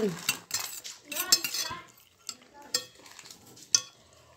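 Crinkling and crackling of a plastic snack packet handled by a small child at his mouth, with scattered sharp clicks.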